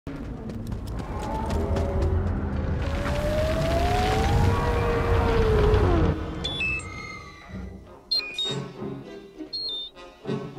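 Film sound effect of a krayt dragon roaring: a loud, rumbling creature roar that rises in pitch and cuts off suddenly about six seconds in. Quieter film music with high tones follows.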